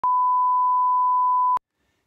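Television test-card line-up tone: one pure, steady electronic beep held for about a second and a half, cutting off suddenly.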